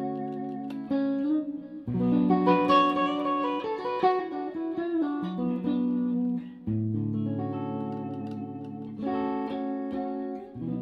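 Hofner Galaxie reissue electric guitar played clean through an amplifier: a run of chords left to ring, changing every one to two seconds, with a louder, brighter stretch about two to four seconds in.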